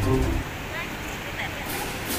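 Background music cuts off about half a second in, leaving the steady rush of river rapids with faint voices of a group.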